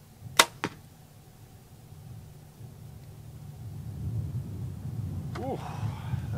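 A single compound bow shot: a sharp, loud crack as the string is released, then a second, fainter click about a quarter of a second later. A low rumble slowly builds after the shot, and a voice begins near the end.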